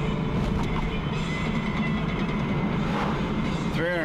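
Steady low road and engine noise inside a moving car's cabin as it runs across a concrete bridge deck.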